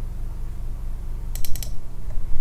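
A quick run of four or five sharp clicks from a computer mouse's buttons about one and a half seconds in, over a steady low hum.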